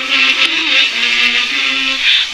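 Music: a song with voices singing long held notes that step from pitch to pitch.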